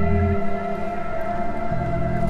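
Ambient electronic music: held drone tones over slow-moving low notes.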